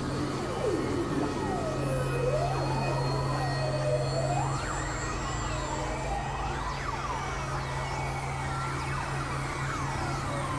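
Experimental electronic music: synthesizer tones sweeping slowly up and down in pitch like sirens, over a steady low drone.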